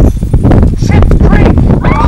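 Several people screaming and cheering in excitement, loud overlapping yells that rise and fall in pitch.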